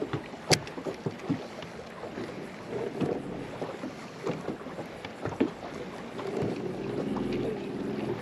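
Sharp clicks and handling noise from a baitcasting rod and reel, the loudest click about half a second in. Near the end comes a steady whirr as the reel is cranked. Wind and water around the boat run underneath.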